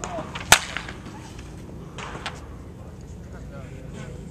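Sharp crack of a wooden baseball bat hitting a pitched ball about half a second in, followed by a few fainter knocks around two seconds in.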